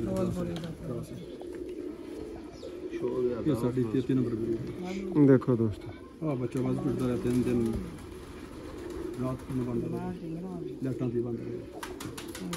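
Domestic pigeons cooing, several low calls repeating and overlapping.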